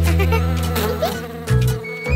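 Cartoon bee buzzing sound effect: a loud steady low buzz as the bee flies past, briefly breaking off near the end.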